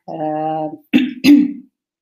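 A woman holds one steady vocal sound for most of a second, then clears her throat in two short rough bursts.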